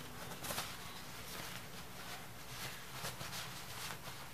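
Stiff aida cloth rustling and crinkling faintly as it is twisted and crumpled by hand.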